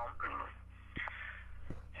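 A man's hesitant vocal sounds and breath between phrases, with two faint clicks and a steady low hum underneath.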